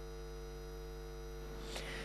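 Faint, steady electrical mains hum, a low buzz with a stack of overtones, carried on the broadcast audio.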